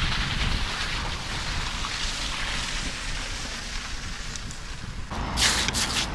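Wind buffeting the microphone: a steady rumbling hiss. About five seconds in, crunching footsteps on icy, slushy snow start.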